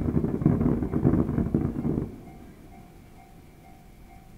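Fireworks going off: a sudden volley of rapid bangs and crackles that lasts about two seconds, then dies away.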